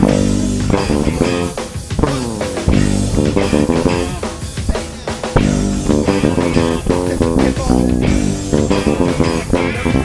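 Electric bass playing a funk-rock line direct into the computer with no amp, on a vintage LEST96 bass with a Seymour Duncan SMB-4A pickup, over drums and guitar from the song's live recording.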